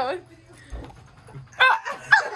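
A short, loud, high-pitched vocal outburst from a person about one and a half seconds in, after a spoken phrase trails off at the start.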